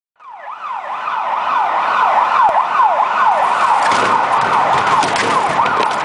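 Siren with a fast up-and-down yelp, sweeping two to three times a second, loud throughout, with a rougher noise building beneath it from about four seconds in.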